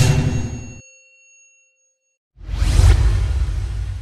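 Logo-intro sound effects: a sudden hit with a metallic ringing tone that fades out over about two seconds, then after a short gap a whoosh with a deep rumble underneath.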